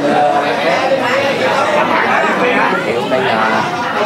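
Several people talking at once: overlapping conversation of a gathering of guests in a room, with no single voice standing out.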